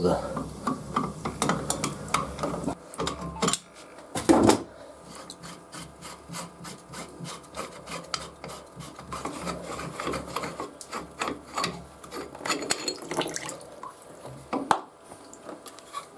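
Water pump pliers working a brass union nut loose on a household water filter's pipe connection, then the nut spun off by hand: a run of small clicks, scrapes and metal-on-metal rubbing, with a louder knock about four seconds in. A low hum from the central heating runs underneath.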